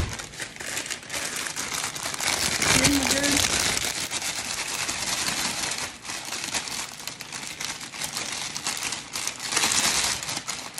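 Vanilla wafer cookies being crushed by hand inside a plastic bag: continuous crinkling of the bag with crunching of the cookies, easing off about six seconds in and picking up again near the end.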